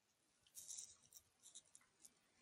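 Near silence: room tone, with a few faint clicks about half a second to a second in.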